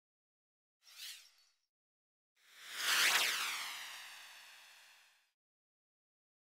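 Edited-in whoosh sound effects over dead silence: a short swish about a second in, then a longer, louder swoosh with a sweeping pitch that peaks about three seconds in and fades away over the next two seconds.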